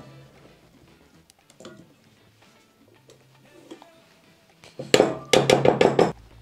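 A stand mixer's metal beater is knocked against a stainless steel mixing bowl to shake off sticky dough, a rapid run of about eight metallic clanks near the end after a few quiet seconds.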